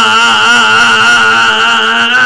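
A man's amplified voice holding one long, wavering intoned note, a drawn-out chanted cry in the middle of a sermon.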